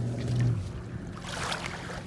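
A motorboat engine hums low and steadily across the lake, loudest about half a second in. Around the middle, water sloshes as sandalled feet wade into the shallows.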